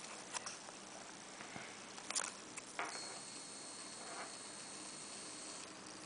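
Faint clicks and light scratches from a clear plastic cup with a scorpion inside being handled, with a thin, steady high whine for a couple of seconds in the second half.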